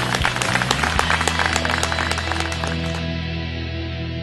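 An outdoor crowd applauding over background music. The clapping stops about three seconds in and the music carries on.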